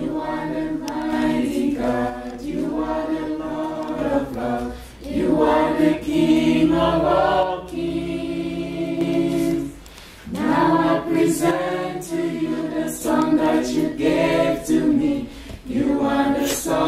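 A group of voices singing a worship chorus together, without clear accompaniment, in long held phrases with short breaks about every five seconds.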